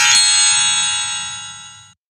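A bright electronic chime from the learning program, several bell-like tones ringing together and slowly fading, cut off suddenly near the end.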